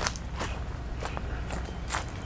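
Footsteps of the person filming, walking over grass and dry leaf litter, several steps in a walking rhythm.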